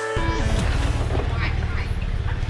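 Small motorbike engine running with an even low pulse, its pitch falling about half a second in as the bike slows.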